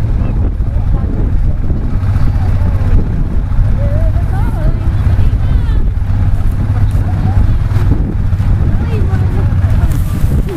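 Many off-road dirt bikes revving together as a race field pulls away from the start line, their engine notes wavering up and down, with wind buffeting the microphone.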